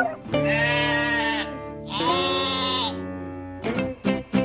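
Sheep bleating twice, two separate calls of about a second each, over background music.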